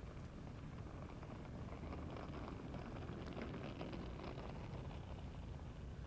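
Suitcase wheels rolling across a floor: a soft, rough crackling rattle that builds and then eases off toward the end.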